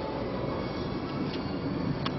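Steady engine and road noise heard inside a Peugeot car's cabin as it drives along.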